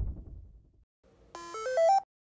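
A Thymio II educational robot plays its power-on jingle as its top button is pressed: a quick run of about six short electronic tones, each higher than the last. Before it, the end of a deep drum hit fades out.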